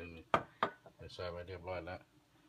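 Two sharp knocks of kitchen items being handled, about a third of a second apart, then a voice talking.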